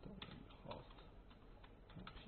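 Faint computer keyboard keystrokes: a handful of separate clicks, irregularly spaced, over a low steady hum.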